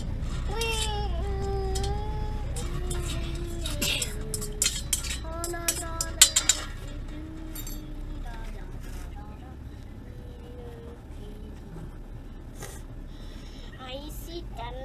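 Puppy whining in long, drawn-out high notes while ticks are pulled from its ear, with scattered sharp clicks through the first half.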